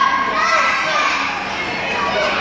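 Young children's voices, several at once, calling out and chattering as they run about and play.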